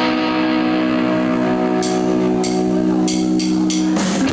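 Amplified electric guitar holding one sustained chord, ringing steadily. About halfway through come five or six quick, sharp cymbal taps from the drum kit.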